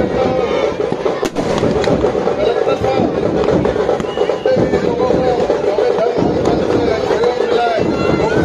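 Firecrackers packed inside burning Dussehra effigies crackling and popping continuously, with one sharp bang about a second in, over a crowd's voices.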